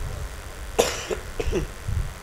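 A man coughing into his hand close to a microphone: a few short coughs starting about a second in, the first the loudest.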